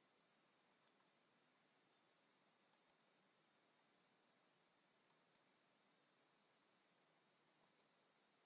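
Four faint pairs of computer mouse-button clicks, each pair a quick double tick, about two and a half seconds apart, over near silence.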